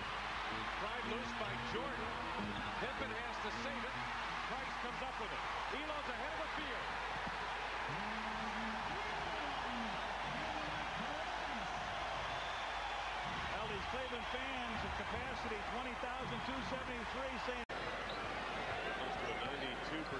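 A basketball arena crowd cheering and yelling continuously. The sound drops out briefly near the end.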